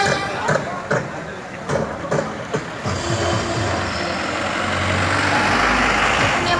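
Street noise with people talking and a few sharp knocks, then a large vehicle's engine running close by, its low hum building and growing louder toward the end.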